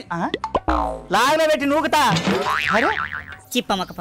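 Comic springy 'boing'-style sound effects, a quick run of pitched sounds that each swoop up and down in pitch, one after another.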